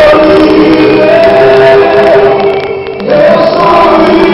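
A large crowd singing a worship song together in unison, with long held notes. The singing briefly gets quieter shortly before three seconds in, then swells back.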